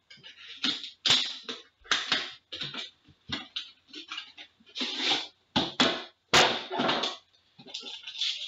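Cardboard outer box of an Upper Deck Premier hockey card box being handled and opened, and the metal tin inside slid out and its lid lifted off: a string of irregular rustles, scrapes and knocks, loudest about a second in and again between five and seven seconds.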